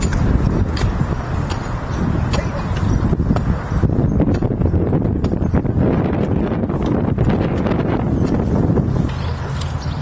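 Wind rumbling on the microphone outdoors, with scattered light clicks and knocks through it.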